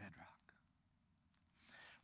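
A man's voice says one word softly at the start, then near silence: room tone, with a faint breath near the end.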